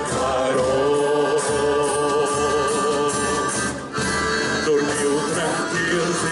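A large group of voices singing a song together in unison, holding long wavering notes, accompanied by accordion.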